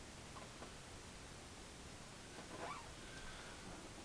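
Faint scrapes of a palette knife laying oil paint onto canvas over low room hiss, with a brief squeak about two and a half seconds in.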